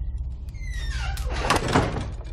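A wooden front door being pushed shut: a falling hinge creak, then the clatter and thud of the door closing and latching about one and a half seconds in.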